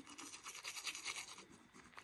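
Toothbrush scrubbing teeth in quick, faint back-and-forth strokes, which die away near the end.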